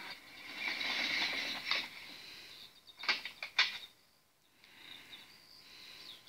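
A small van pulling up with a mechanical whirring, then a few sharp clicks of its door opening.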